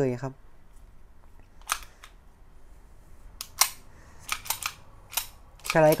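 Sharp mechanical clicks from a CZ Shadow 2 pistol's action being worked by hand: about eight separate clicks spread over a few seconds, the loudest about three and a half seconds in.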